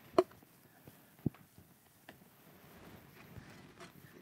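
A few short, sharp clicks as a sheet-metal strip is bent by hand over a mandrel in a bench vise. The loudest comes just after the start, another about a second later and a fainter one soon after; otherwise it is quiet.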